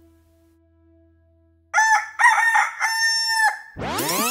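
A rooster crowing once, a multi-syllable cock-a-doodle-doo lasting about two seconds that starts after a near-quiet second and a half. Music with sweeping tones begins just at the end.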